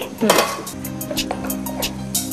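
Wooden spatula stirring and scooping cooked rice in a cooking pot: a string of light clicks and scrapes against the pot.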